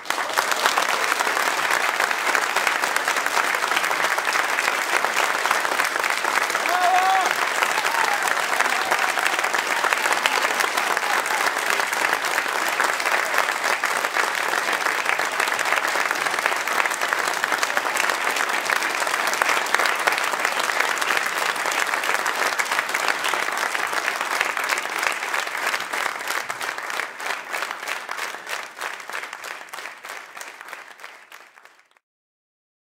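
Audience and band members applauding a concert band performance, a dense, steady ovation that thins into separate claps and fades away over the last several seconds.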